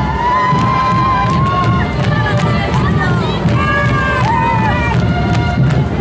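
Loud tinku parade sound: a crowd's voices over the band's dense low drumming, with high voices holding long drawn-out calls, one rising and held for about two seconds at the start and more about halfway through.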